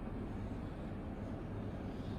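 Steady low room hum, with faint scratching of a marker on a whiteboard as a line is drawn.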